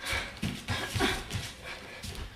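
Soft, irregular thumps of a dancer's feet moving on a wooden floor, mixed with short breathy puffs.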